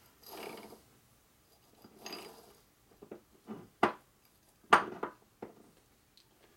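Steel transmission gears and parts from a Harley-Davidson Milwaukee-Eight 6-speed gearbox clinking and knocking as they are slid off the shaft and set down on a metal workbench. Two soft scraping sounds come first, then about five sharp clinks in the second half, the loudest near the end.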